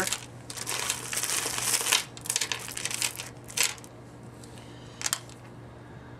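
Clear plastic bag crinkling and strands of pearl beads clicking together as necklaces are pulled out of the bag and handled, in a run of irregular bursts through the first four seconds and one last short burst about five seconds in.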